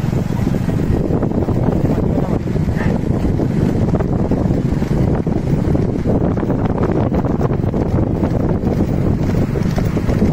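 Steady wind buffeting on the microphone of a vehicle moving at speed, a dense low rumble of wind and road noise.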